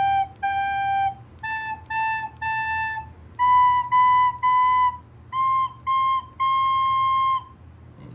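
A recorder playing a simple beginner exercise: groups of two short notes and one longer note on G, then A, then B, then C. Each group is pitched a step higher than the last, and the final C is held longest.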